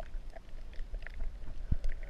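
Underwater sound picked up by a submerged camera over a reef: a low rumble of moving water with scattered small clicks and ticks, and a single knock near the end.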